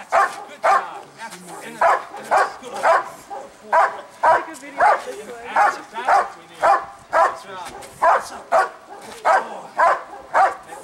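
German Shepherd barking repeatedly, about two barks a second, as it is held back on a leash and worked up against a decoy's bite sleeve in protection training.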